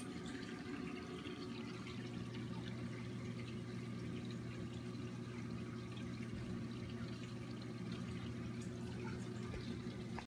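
Reef aquarium water circulation running: a steady wash of moving water over a constant low hum.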